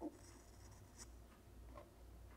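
A few faint, short strokes of an H graphite pencil on cold-pressed watercolour paper: the first, at the very start, is the loudest, with lighter scratches about a second in and near the end.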